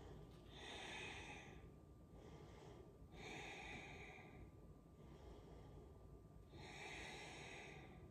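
Faint, slow breathing of a person holding a yoga pose: three long breaths about three seconds apart.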